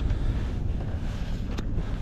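Wind buffeting the microphone: a steady low rumble with hiss, and a light click about one and a half seconds in.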